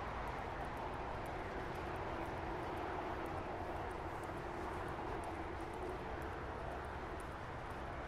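Steady distant rumble of outdoor noise, with a faint hum that swells and fades about two to five seconds in.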